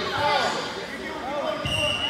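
Spectators' voices calling out in a large gymnasium hall, with a dull thump and a brief high steady tone near the end.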